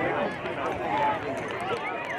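Many overlapping, indistinct voices of youth soccer players and sideline spectators talking and calling out.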